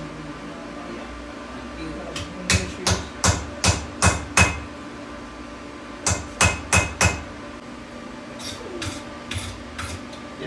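Hand hammer tapping a drift punch through a hot steel bottle-opener blank on an anvil, drifting the punched hole open: six sharp metal strikes, a pause, four more, then four lighter taps near the end.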